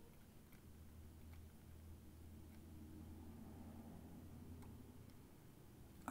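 Near silence: a faint low hum with a few faint, scattered clicks from a ratchet wrench as a pipe-thread plug is snugged into the aluminium transfer case.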